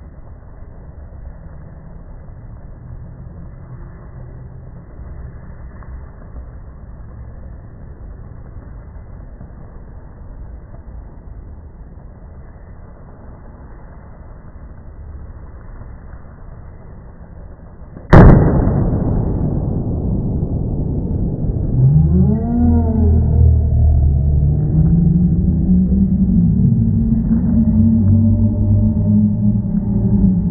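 Pure sodium metal reacting with water in a metal pie tin, ending in one sudden loud bang about 18 seconds in that dies away over the next few seconds: the hydrogen given off by the reaction igniting.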